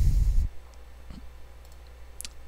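A short rush of noise on the microphone that cuts off about half a second in, then a few faint computer mouse clicks spaced through the rest.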